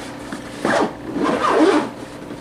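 Zipper on the side camera-access flap of a Lowepro Fastpack 250 backpack being pulled open, first in a short pull and then in a longer one.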